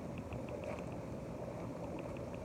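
Hot tub jets running: a steady rush of churning, bubbling water with faint ticks of bubbles breaking.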